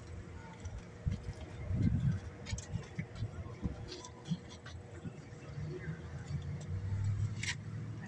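Faint background voices over an uneven low rumble, with a few scattered clicks.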